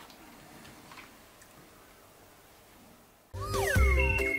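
Quiet room tone with a couple of faint taps, then, near the end, a loud electronic intro jingle starts suddenly, opening with sliding, whistle-like tones.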